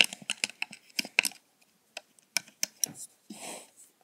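Irregular light clicks and taps of a plastic hook and rubber bands against the pegs of a plastic bracelet loom as bands are hooked along a chain, with a brief soft rustle near the end.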